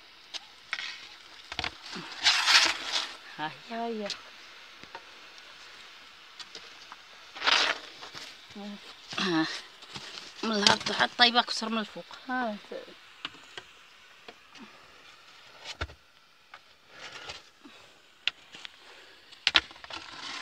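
A woman's voice speaking in short stretches, with two brief hissing rushes and a few scattered clicks.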